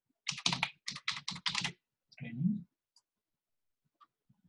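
Computer keyboard typing: a quick run of about nine keystrokes as a password is entered. A short murmur of voice follows a little past two seconds in.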